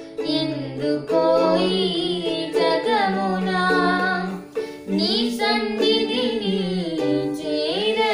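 A girl and a man singing a song together, accompanied by a strummed ukulele.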